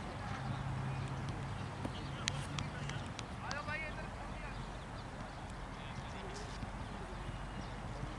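Open-air background noise with a low steady hum that stops about three seconds in. A couple of sharp clicks come just before it stops, then a man calls out one short word.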